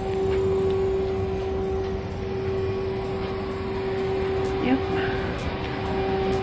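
Steady hum of a parked airliner's cabin systems: one constant mid-pitched tone over a low rumble.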